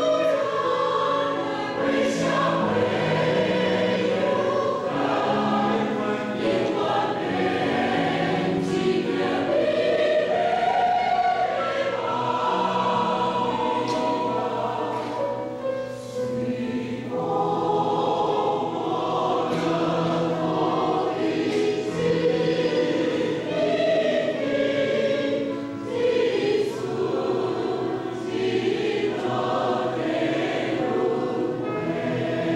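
Mixed choir of women's and men's voices singing together in parts, mostly on long held notes, dipping briefly in loudness about halfway through.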